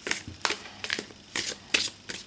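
A thick-cardstock Tarot Decoratif deck being shuffled hand over hand: about five crisp card slaps and rustles, one roughly every half second, as packets of cards are moved from one hand to the other.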